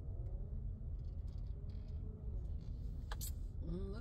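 Low, steady rumble of a car's engine and tyres heard from inside the cabin as the car rolls slowly, with a single sharp click about three seconds in.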